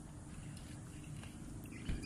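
Quiet outdoor background: a steady low rumble with faint bird calls.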